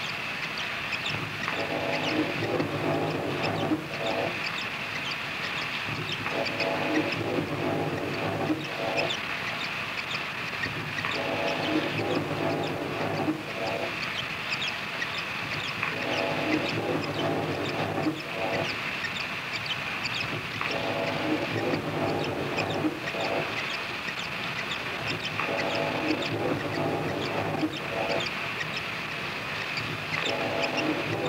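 Experimental noise music from a tape release: a constant hissing, crackling layer under a pitched drone that cuts in and out in blocks of about two seconds, every four to five seconds.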